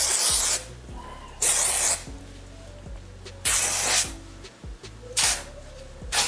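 Aerosol dry shampoo can sprayed onto wig hair in four short hisses, each about half a second long, spaced a second or two apart.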